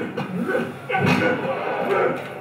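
Soundtrack of a computer-animated fight sequence played back over a hall's speakers: voice sounds mixed with sharp hits.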